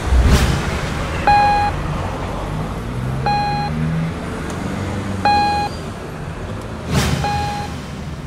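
Sound-design effects: an electronic beep repeating every two seconds, four times in all, over a low rumbling drone. A deep boom and whoosh at the start, and another whoosh about seven seconds in.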